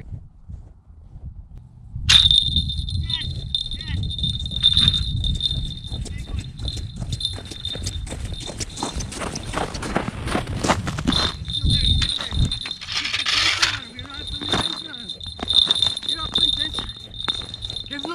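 Wind rumbling and buffeting on the microphone from about two seconds in, with a steady high-pitched ringing tone held above it.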